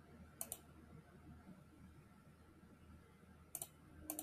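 Computer mouse clicked twice, once about half a second in and again near the end, each click a quick pair of sharp ticks, over a faint steady low hum.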